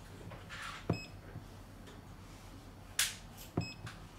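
Two short electronic key beeps, each with a soft click, from the UNI-T UT511 insulation tester as its buttons are pressed: one about a second in and one near the end. A brief hiss comes around three seconds in.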